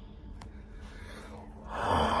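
A man's loud, exasperated exhale near the end, after a quiet stretch with one faint click about half a second in.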